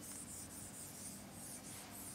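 Faint scratching of chalk writing on a blackboard.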